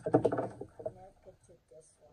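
A person's voice in short, speech-like sounds, loudest in the first half second, over the rustle of paper card being handled and folded.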